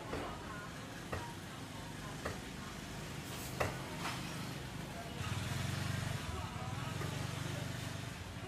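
Market ambience: faint background voices and a few sharp clacks. About five seconds in, a low motor-vehicle rumble swells up and holds to the end.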